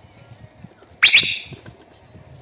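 A bird calling with thin, high rising whistles repeated about every half second. About halfway through comes a much louder, sudden sharp chirp that fades quickly.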